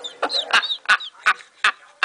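A man laughing in about five short, sharp bursts, with a couple of squeaky high-pitched sounds near the start.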